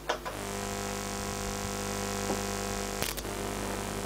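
A home-built bottom-fed vacuum tube Tesla coil switched on and running: after a click, a steady electrical buzz over a low mains hum, with another click about three seconds in. The buzz is the coil working, now fitted with proper diodes in place of the shorted one.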